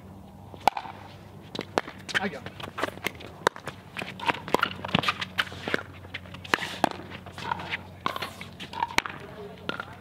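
Pickleball rally: sharp pocks of composite paddles hitting a hollow plastic pickleball and the ball bouncing on the hard court, a string of separate clicks about once or twice a second. Shoes scuff and step on the court between the hits.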